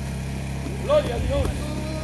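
Steady low hum with evenly spaced low tones throughout, and a short burst of a voice about halfway through.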